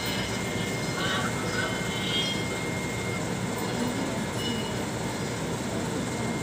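Steady rushing background noise, with faint, indistinct voices of people nearby about a second into the sound.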